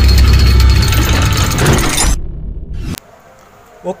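Logo intro sound effect: a loud deep rumble with a bright, hissing swell over it that stops about two seconds in, the low rumble carrying on about a second longer and cutting off suddenly. A man says 'Oke' at the very end.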